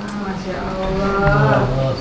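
A person's voice drawing out long, held notes that bend in pitch, as in a sung or chanted line.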